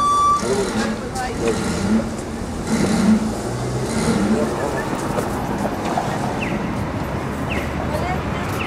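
Busy street ambience: steady traffic noise with indistinct voices of people nearby. A short high beep ends about half a second in.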